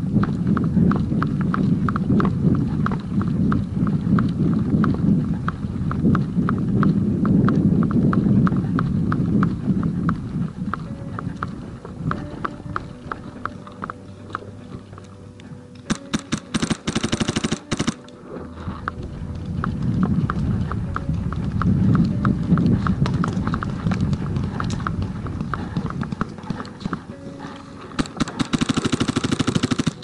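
Rustling and rhythmic footfalls of a player moving through grass and brush. About halfway through, and again near the end, a paintball marker fires rapid strings of sharp shots.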